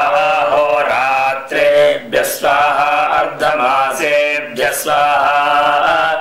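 A man's voice chanting Vedic Sanskrit mantras in a steady, sustained recitation, phrase after phrase with brief pauses for breath.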